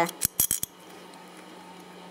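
Four or five sharp clicks in quick succession in the first half-second or so as pliers squeeze a 3D-printed Taulman 618 nylon gear, whose printed layers are delaminating under the load. After that only a faint steady hum remains.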